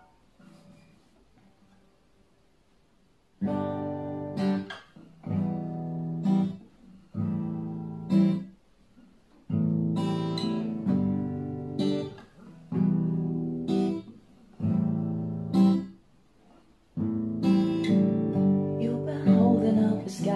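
Acoustic guitar intro, starting about three and a half seconds in: strummed chords in short phrases of a second or two, each ending on an accented stroke that is cut short, with brief gaps and two longer pauses between the groups.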